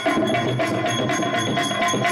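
Live drama band music: hand drums and small cymbals keep a fast, steady beat under held melody notes.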